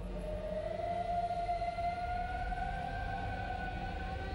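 Dramatic background score: one long held tone that slowly rises in pitch, over a low rumbling drone.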